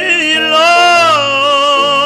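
A male cantor singing hazzanut, holding one long note with vibrato that lifts in pitch and then settles.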